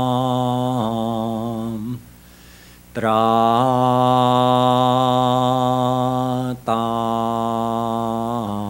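A solo male voice chanting a slow Sanskrit mantra, drawing each syllable out into long held notes. The voice pauses for a breath about two seconds in, resumes a second later, and breaks again briefly near the end.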